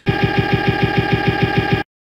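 A machine running with a rapid, even clatter, about nine beats a second, over a steady hum; it cuts off suddenly near the end.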